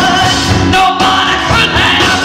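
A woman singing lead at full voice over a live rock and roll band, her notes held and sliding in pitch over a steady drum beat.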